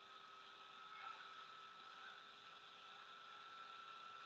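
Near silence: a faint steady hiss with a thin steady tone.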